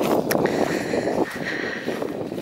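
Footsteps walking through dry, freshly mown grass, an uneven crackly rustle with each step.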